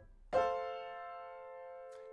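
Upright piano: an F major triad in first inversion (A, C, F) struck once about a third of a second in and held, ringing on and slowly fading.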